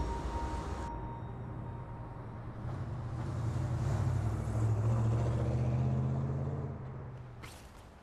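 Night city street ambience: road traffic, with a low vehicle rumble that swells to a peak a few seconds in and fades away. The tail of a music cue dies out in the first second, and a brief swish comes near the end.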